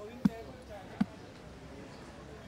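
Two dull thumps about three-quarters of a second apart, over low crowd chatter.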